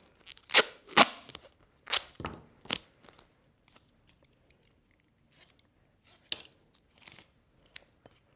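Duct tape pulled off the roll in four short, loud rips within the first three seconds, then faint rustles and clicks of the tape being handled and pressed down.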